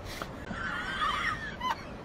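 A person's high-pitched, wavering, squealing laugh for about a second, ending in a short squeak, after a vehicle's brief rush of tyre noise as it passes at the start.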